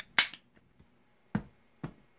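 Sharp clicks of small metal magnetic clips being handled: a loud click just after the start, then two more near the end, the later ones with a slight thud.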